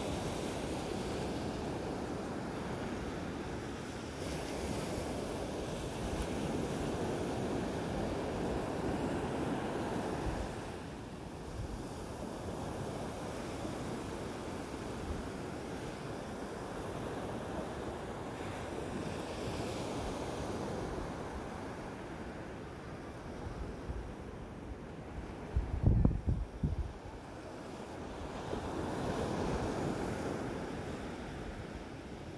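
Ocean waves breaking and washing up on a beach, the surf rising and falling in slow swells. Near the end, wind buffets the microphone in a few loud low bumps.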